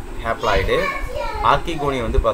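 Speech: a voice talking, with no other sound standing out.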